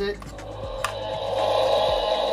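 Mattel Epic Roaring Tyrannosaurus Rex toy playing its electronic roar through its built-in speaker after a short press of the tail button. The roar starts quiet and grows louder over about a second and a half. With the short press there is no head-shaking motion.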